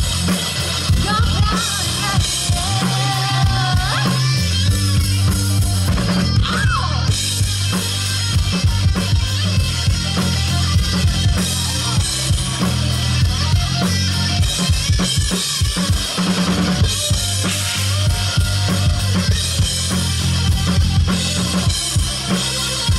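Live country-rock band playing an instrumental stretch of the song: drum kit, electric bass, electric guitar and acoustic guitar, with no singing heard.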